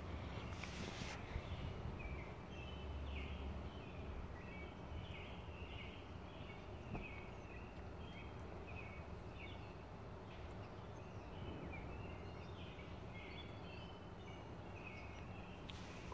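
Birds chirping in short, high repeated notes throughout, faint, over a steady low outdoor background rumble.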